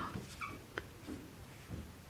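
Dry-erase marker squeaking faintly on a whiteboard as symbols are written, a brief squeak about half a second in and a light tick of the tip soon after.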